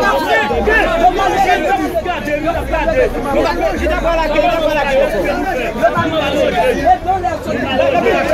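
Several men's voices talking and calling over one another in a busy, continuous chatter.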